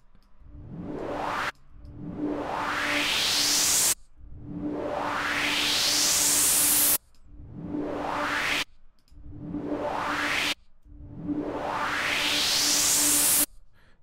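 Synthesized white-noise riser from Serum: bright white noise through a resonant low-pass filter whose cutoff sweeps upward, played six times in a row, each rise of a different length and each cut off abruptly. A steady low synth tone sounds under the noise.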